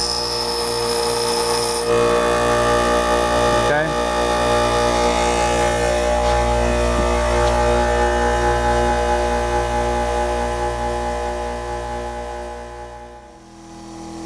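Harbor Freight bench grinder running with a steady motor hum; for the first two seconds a steel drill bit is pressed to the wheel, adding a high grinding hiss. The hum fades out near the end.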